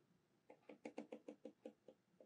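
A faint run of about ten quick clicks, roughly eight a second. They come as the current control of the e/m apparatus's coil power supply is turned down.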